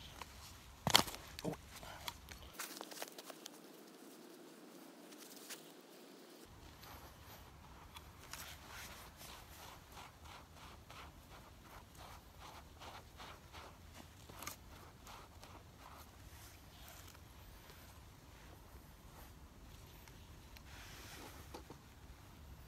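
Faint scraping and rustling of a gloved hand digging and packing loose, sandy dirt around a steel foothold trap. There are two sharp clicks about a second in, as the trap is pressed into its bed, and scattered small clicks and scrapes follow.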